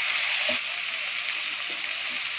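Onions, tomatoes and green chillies sizzling in hot oil in a pan, a steady even hiss.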